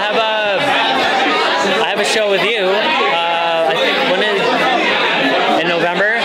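Speech: a man talking over the steady chatter of a crowd of people.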